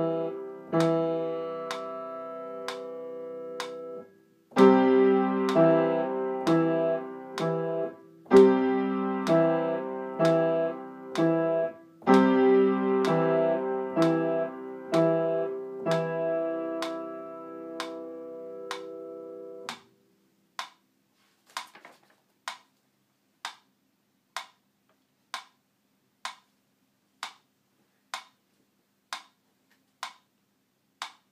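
Piano playing a beginner exercise on C, E and G, in phrases broken by short gaps, over a steady metronome tick. About two-thirds of the way in the piano stops, and the metronome ticks on alone about every 0.6 s.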